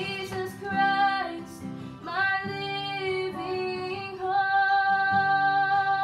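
A woman singing while playing an acoustic guitar, holding one long note through the last couple of seconds.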